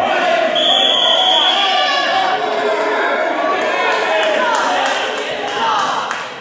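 Gym scoreboard buzzer sounding once, a steady high tone for about a second, as the wrestling period clock runs out, over spectators shouting and cheering.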